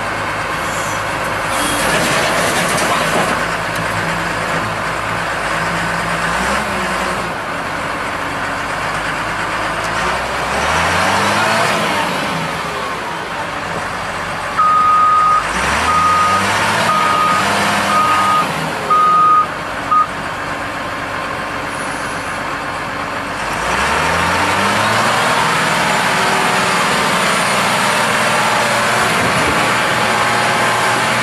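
Caterpillar 930G wheel loader's 3056 diesel engine running and revving up three times. Its backup alarm beeps loudly about six times, roughly once a second, midway through.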